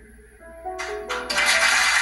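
Studio audience applause breaking out a little under a second in and swelling louder, over a few held musical notes that start just before it.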